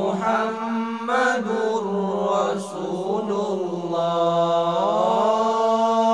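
A cappella vocal group chanting a sholawat with no instruments: a low note held steadily underneath while a melodic line moves and swells above it.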